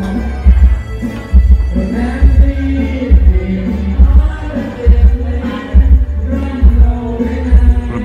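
Karaoke sound system playing loud music with a heavy bass thump a little more than once a second under a melody.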